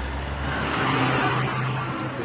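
A truck's engine running with steady vehicle noise; a deeper rumble under it drops away a little under a second in.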